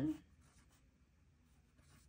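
Pencil writing on a paper workbook page: faint, irregular scratching strokes as digits are written.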